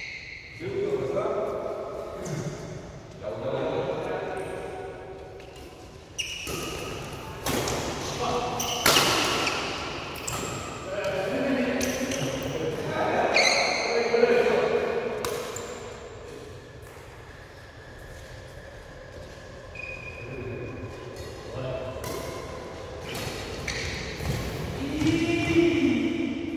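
Badminton play in a large echoing hall: rackets striking the shuttlecock in a string of sharp, irregular hits, with brief high squeaks of shoes on the court floor.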